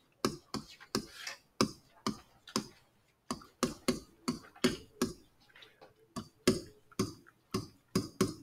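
A stylus writing on a digital pen surface: an irregular string of sharp taps and clicks, a few a second, as each letter is stroked.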